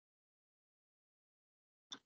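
Near silence, with one brief click just before the end.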